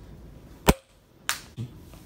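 A sharp snap or click about two-thirds of a second in, followed by a moment where the background drops almost to silence. About half a second later comes a second, weaker snap and then a faint knock.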